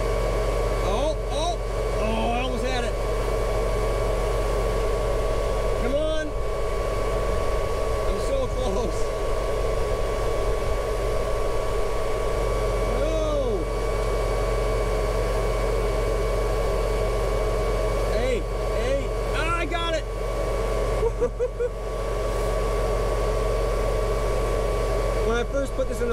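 Steady drone of the idling tractor and John Deere planter machinery, with a low hum and a constant higher whine that do not change.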